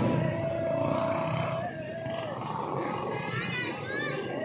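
Busy street noise with voices mixed in. A long steady tone sounds for about two seconds, then slides down in pitch and stops. A brief wavering high tone comes near the end.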